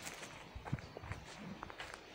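Faint footsteps on a dry dirt path strewn with fallen leaves: small, irregular crunches and clicks.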